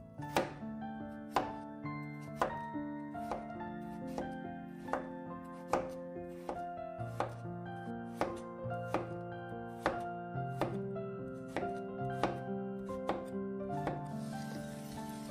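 Chef's knife chopping raw pumpkin on a wooden cutting board, sharp cuts about twice a second, with the blade knocking the board. Background music with held notes plays underneath.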